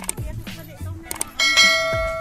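Subscribe-button animation sound effect: a short click, then a bright notification-bell ding about one and a half seconds in that keeps ringing, over background music.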